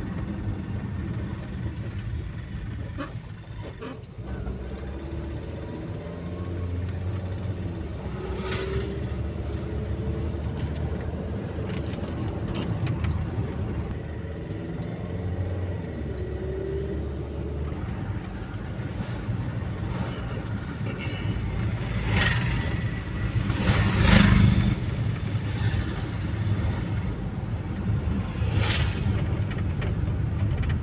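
Vehicle's engine and road noise heard from inside the cabin while driving: a steady low rumble, broken by a few short, sharp knocks, the loudest about 24 seconds in.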